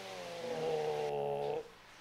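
Dog whining while being put in the shower for a bath: one long drawn-out whine that falls slightly in pitch and breaks off about one and a half seconds in.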